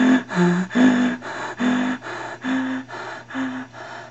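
A person breathing hard in rapid, voiced gasps, about two breaths a second, growing fainter toward the end.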